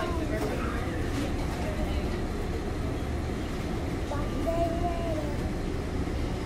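A young girl singing softly to herself without clear words, with a drawn-out held note about two-thirds of the way through, over a steady low rumble of room noise.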